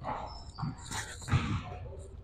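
Basketball dribbled on a hardwood gym floor, a couple of soft bounces, with short high sneaker squeaks.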